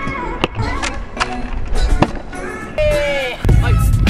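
Stunt scooter rolling on a concrete skatepark, with a few sharp knocks of its deck and wheels on the ground and a short vocal sound. Music with a heavy beat comes in near the end.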